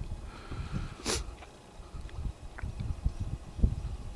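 A light breeze buffeting the microphone in uneven low gusts, with one short sharp noise about a second in.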